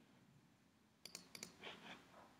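Faint computer mouse clicks: two quick pairs of clicks about a second in, followed by a soft scuffing sound.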